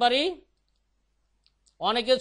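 A person's voice speaking, through a video call, breaking off for over a second in the middle, with a couple of faint clicks in the pause before speech resumes.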